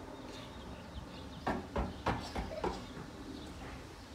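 A quick run of about five light taps on concrete over about a second, with faint bird chirps behind.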